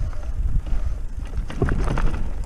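Wind buffeting the microphone as a mountain bike rolls down a rough, rutted dirt-and-grass track, with a steady low rumble from wind and tyres and a few knocks and rattles from the bike over bumps near the end.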